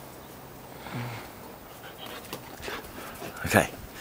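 A dog makes a low, soft drawn-out sound for about a second, then things go quiet apart from faint small sounds.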